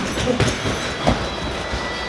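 Steady background hum under Muay Thai sparring, with a few short thuds, the sharpest about a second in.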